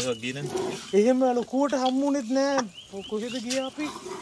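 A person's voice speaking in short phrases that the English transcript does not record, with a few short high chirps near the end.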